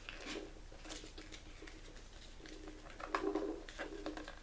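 Paper being folded and creased by hand on a tabletop: faint, scattered crinkles and light taps. A faint steady low hum runs underneath, and there is a brief, slightly louder low hum about three seconds in.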